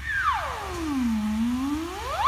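Variable-pitch steam whistle blowing with a hiss of steam: the note starts high, slides down to a low pitch about halfway through, then swoops back up.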